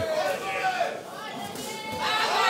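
Crowd chatter and indistinct voices at a moderate level.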